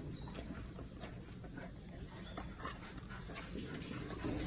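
A dog whimpering softly, with scattered light clicks.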